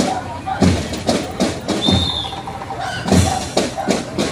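Marching band drums beating a parade cadence, a deep bass-drum stroke roughly every half second to second with a short break past the middle, over crowd chatter.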